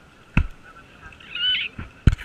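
A sharp knock on the action camera about half a second in, then a short high-pitched call that rises and falls, and a few smaller knocks near the end.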